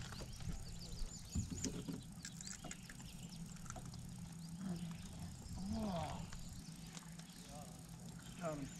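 Small birds chirping and calling repeatedly with short high notes, over a low steady hum and a few soft voices.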